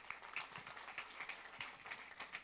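Audience applauding, fairly faint, many separate hand claps.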